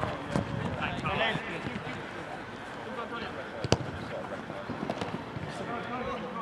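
Football being kicked on an artificial pitch: one sharp thud about three and a half seconds in, the loudest sound, with a few lighter knocks about a second later. Players' distant shouts are heard in the first second or so.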